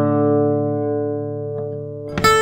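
Yamaha steel-string acoustic guitar in drop D tuning, fingerpicked: the last notes plucked and the open bass strings ring on together and slowly fade, with one faint string touch near the end.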